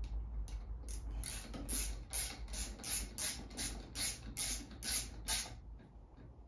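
Ratchet socket wrench with a thin 10 mm socket clicking in a steady run of short strokes, about three a second, as a nut is tightened down onto an air rifle's stock fixing.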